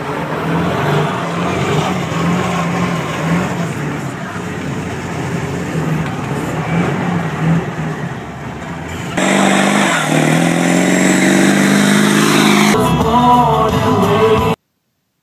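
Pickup truck engine and road noise heard inside the cab as it drives through snow, with music playing alongside. About nine seconds in it abruptly gets louder as the truck pushes through deep snow.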